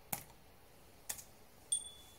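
Laptop keys pressed, three short sharp clicks about half a second to a second apart, the last with a brief high ring. They are Tab and Space presses stepping through the setup screen while the touchpad is not working.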